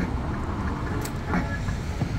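Steady low rumble of passing road traffic, with a brief sharp click about a second in.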